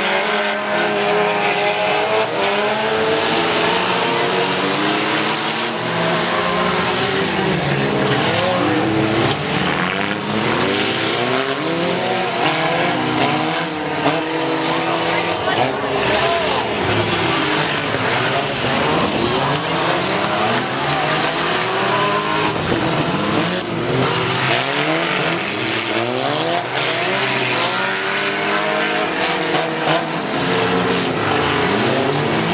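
Several demolition derby cars' engines revving at once, their pitches rising and falling over one another, with scattered short knocks from cars hitting each other.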